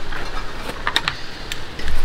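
Frame legs of an above-ground pool being fitted into the plastic T-joints of the top rail, giving a series of sharp, irregularly spaced clicks and knocks.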